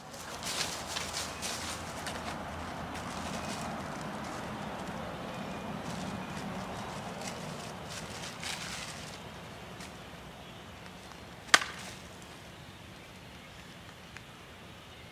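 Quiet outdoor ambience with light rustling and crunching of dry fallen leaves underfoot. Late on comes a single sharp crack, the loudest sound.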